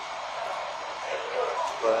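A man pausing between phrases, with faint voice sounds and his speech starting again near the end, over a steady background hiss.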